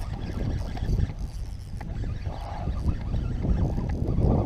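Wind buffeting the microphone as a low, uneven rumble, with a few faint clicks.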